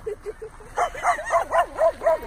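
A dog yapping: a couple of soft yips, then a quick run of louder barks, about four a second.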